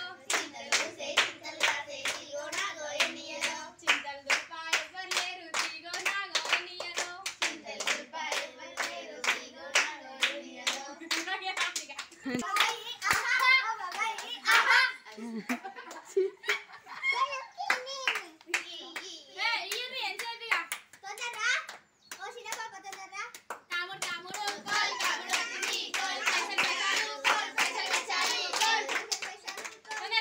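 Quick, steady rhythmic hand clapping by a group of girls, with young voices singing and chanting a Telugu kamudu folk song over it. The clapping thins out briefly around the middle, then picks up again.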